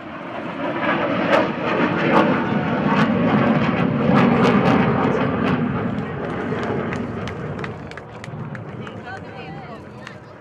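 Jet engines of a MiG-21 and three MiG-29 fighters flying past in formation: a broad rush that swells over the first few seconds, is loudest around the middle, then fades away.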